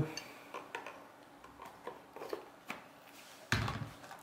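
Light clicks and taps of folding pocket knives being handled and set into a canvas knife roll, with a louder handling noise near the end.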